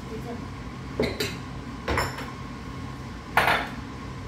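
Dishes and cutlery clinking and knocking at a kitchen counter, a few short separate clinks, the loudest near the end.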